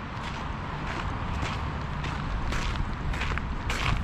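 Footsteps of a person walking on gravel, a few faint crunches over a steady low rumble and hiss.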